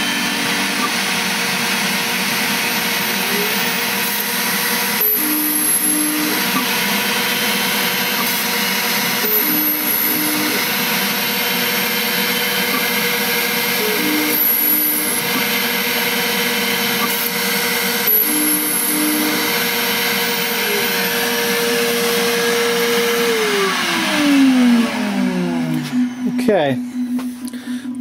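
LPKF 93s PCB milling machine routing mounting holes with a 2 mm contour router bit: its spindle runs with a steady high whine, and a short change in the sound recurs about every four and a half seconds as it plunges and routes each hole. About 23 seconds in, the spindle whine falls in pitch as it spins down at the end of the phase.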